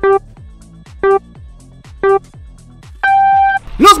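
Race-start countdown beeps: three short beeps about a second apart, then a longer, higher beep that signals the start.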